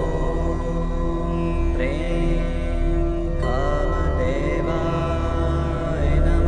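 Hindu mantra music: a chanted, sliding-pitch vocal line enters about two seconds in and again past three seconds, over a steady sustained drone.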